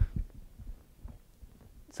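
A few soft, low thumps in the first second, then quiet room tone.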